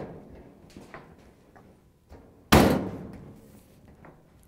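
Sheet-metal dryer top being pressed down and snapped onto its front locking tabs: a knock at the start, a few light clicks, then a loud bang about two and a half seconds in that rings briefly as the top seats.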